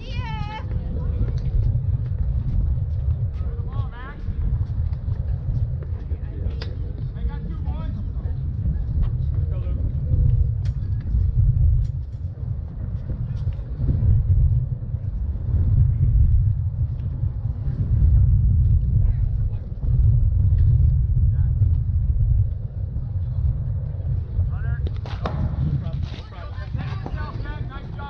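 Low rumble of wind buffeting the camera microphone, swelling and easing in gusts, with faint distant voices from the field now and then.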